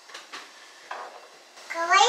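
A few faint short clicks in a quiet kitchen, then a short vocal sound rising in pitch near the end, the loudest thing heard.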